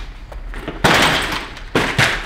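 Heavy thuds from a barbell loaded with weight plates being handled and set down hard: a loud impact about a second in with a short rattling tail, then a second, sharper knock near the end.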